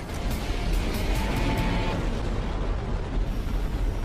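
Jet-boot thrusters firing for a slow liftoff: a steady rushing blast with a deep rumble, under background music.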